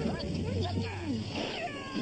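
Cartoon character voices, high and gliding up and down in pitch, over a steady low hum.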